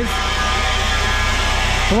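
John Deere tractor engine idling steadily, with an even hiss over it.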